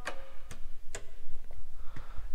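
Wall-mounted toggle light switches in metal boxes being flipped one after another: about four sharp clicks, roughly two a second.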